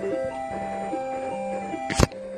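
Simple electronic beeping melody of retro video game music, steady held notes changing pitch every fraction of a second. A sharp click near the end.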